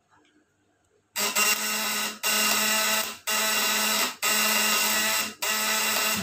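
Homemade vibrating-contact high-voltage inverter buzzing loudly as it drives a lamp load, the platinum contact points chattering with the transformer. The buzz starts about a second in and runs on with four brief breaks.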